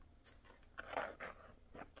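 Faint rustling and a few light taps as a wooden hoop picture with fabric and lace trim is handled and turned over, loudest about a second in.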